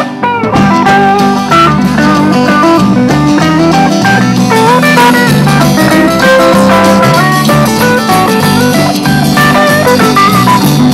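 Instrumental break in a live country-rock song: an electric guitar plays a bending lead line over bass and acoustic rhythm guitar.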